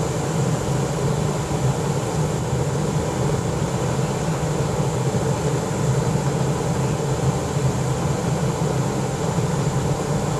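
Air blower running steadily, forcing air through a hose into a waste oil burner while wood burns inside to preheat it. A constant low hum with hiss over it.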